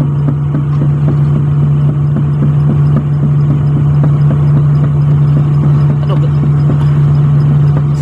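Komatsu PC400-8 excavator's diesel engine running steadily at about 1600 rpm, with a rapid, irregular clatter from the raised track spinning freely. With no load on it, the travel circuit needs only about 100 kg/cm² of pump pressure.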